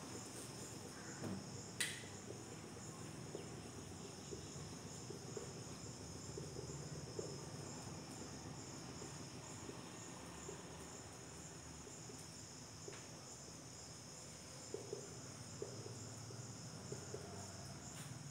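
Faint, steady high-pitched trilling of crickets, with soft scratches and taps of a marker writing on a whiteboard and a single sharp click about two seconds in.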